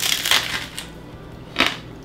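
A bite into a candy apple: the hard, glassy sugar-candy shell and the crisp Honeycrisp apple beneath crack and crunch. A second, shorter crunch of chewing comes about a second and a half in.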